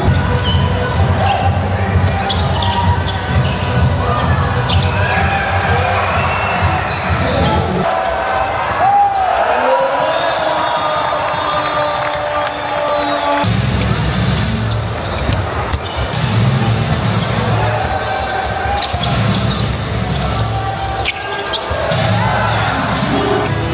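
Basketball arena sound: music over the hall's PA with a heavy bass beat, voices and crowd noise, and a ball bouncing on the court. The bass drops out for a few seconds about eight seconds in, then comes back.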